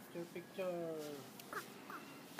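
A person's voice: a couple of short sounds, then one drawn-out call falling slightly in pitch, about half a second in.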